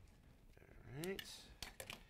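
A chef's knife tapping lightly on a wooden cutting board a few times as an onion is cut.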